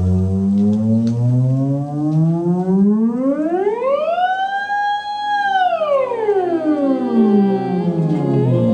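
Moog theremin playing one slow glide: the pitch rises from a low tone to a high one, holds there for about a second and a half around the middle, then slides back down.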